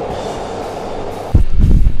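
Train running, a steady rushing noise. About a second and a half in it is joined by a sudden, much louder low rumble. Music plays faintly underneath.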